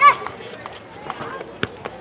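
Men's voices shouting on a rugby pitch: one loud shout right at the start, then scattered quieter voices and a few sharp knocks.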